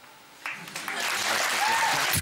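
Studio audience applauding, starting about half a second in and building, with some voices mixed in.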